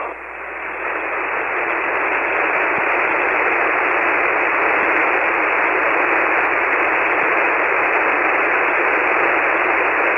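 Ham radio receiver hiss on the 40-metre band in SSB mode, held to the narrow voice passband of the receive filter: an empty channel while the other station is unkeyed. It dips as the last transmission drops out, then rises back over the first second or two and holds steady.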